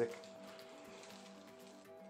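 Quiet background music holding sustained notes, with a faint rustle of a wooden rolling pin rolling over greaseproof paper.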